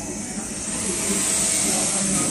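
Hydraulic power unit of a leather lamination press running: a steady motor-and-pump hum with a high hiss that grows louder about a second in.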